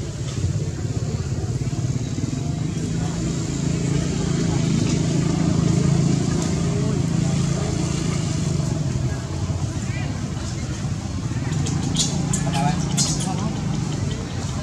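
A steady low rumble that swells and eases, with people's voices in the background and a few sharp clicks near the end.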